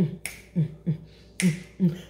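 A woman beatboxing: six quick percussive hits in two seconds, low thumps that drop in pitch like a kick drum, with two sharp hissing snare-like hits among them.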